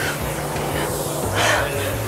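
Background music with a steady bass line, under a loud, even rushing noise.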